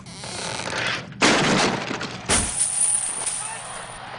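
A heavy purse full of coins landing on a wooden table with a thud about two seconds in, the coins spilling out and clinking in a bright, lingering jingle.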